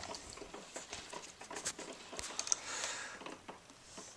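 A cat's fur brushing and rubbing against the camera, close to the microphone: soft rustling with irregular light clicks and taps, a little louder about three seconds in.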